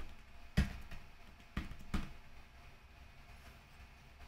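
A few scattered computer keyboard keystrokes, about three or four separate clicks in the first half, then quiet room tone.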